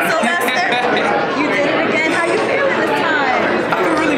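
Several voices talking over one another: close conversation and crowd chatter in a busy room.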